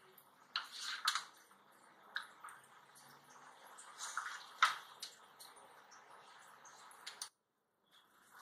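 A serving spoon scraping and knocking against a pan and plate while soft, moist cooked macaroni is scooped out and set down, a handful of short clicks and scrapes. The sound cuts off suddenly near the end.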